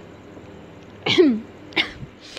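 A woman coughs twice to clear her throat: a longer cough about a second in whose voice slides down in pitch, then a short one near the end.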